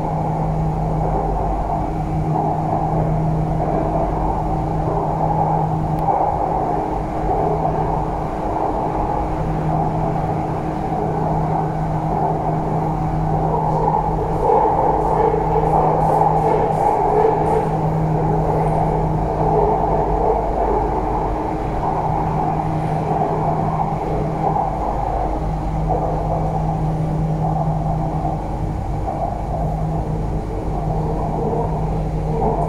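Inside a moving elevated metro train: the steady running rumble of the train on its rails, with a low hum that fades in and out every few seconds.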